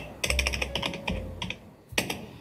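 Typing on a computer keyboard: a quick run of key clicks that thins out after about a second and a half, with one more key press near the end.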